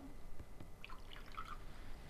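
Water poured from a plastic ionizer jug into a glass tumbler, faint, tailing off into a few drips as the jug is tipped back.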